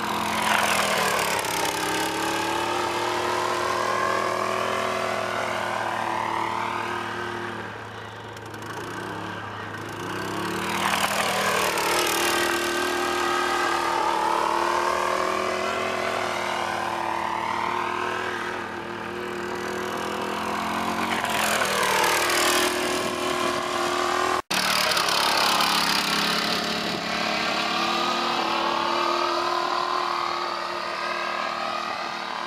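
Homemade go-kart's lawn mower engine running at speed as the kart laps. Its pitch sweeps down each time the kart passes close by, three times.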